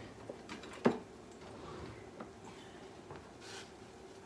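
Light clicks of kitchen tongs handling cookware on a gas stove, with one sharp knock about a second in, over a faint steady hum and a brief soft hiss near the end.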